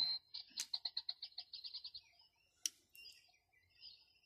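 A bird singing a rapid trill of high chirps, about nine a second, from about half a second in for about a second and a half, with fainter chirps after it. A single sharp click comes a little before the end, as the multitool's can-opener blade is opened.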